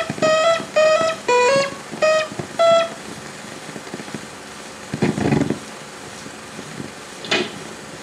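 Plucked guitar title music playing a short melody of single notes, about two a second, which ends about three seconds in. Then a low steady hiss, broken by two brief noisy sounds around five and seven seconds.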